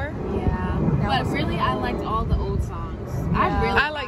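Speech: women talking in conversation, over a steady low background rumble.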